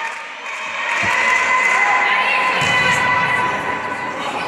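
Spectators and players cheering and shouting in a sports hall, with a single thump about a second in.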